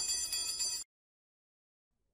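Bells ringing, with several steady high tones sounding together, that stop abruptly less than a second in and give way to dead silence.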